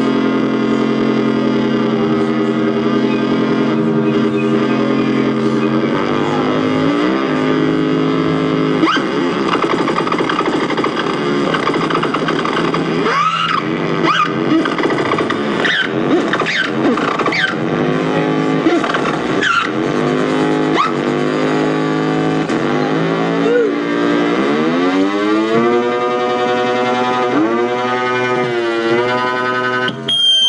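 Homemade electronic instrument with a squeezable purple body, buttons and pressure sensors, played through software synthesis: layered, sustained electronic tones that hold a steady chord at first, then bend and sweep in pitch more and more, ending in repeated swooping glides.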